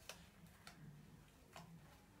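Near silence with three faint short clicks spread over about two seconds, from hands handling a stack of denim jeans.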